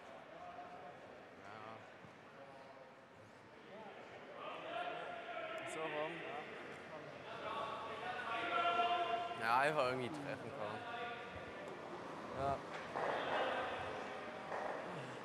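Indistinct voices of curlers talking among themselves on the ice, heard from a distance in a reverberant rink. There is a single short knock near the end.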